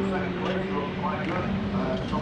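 Rallycross car engines running at racing speed, a steady engine note with some voice over it.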